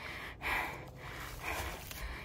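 A woman breathing hard, with two heavy breaths about a second apart: winded from a steep uphill climb under a backpack in heat and humidity.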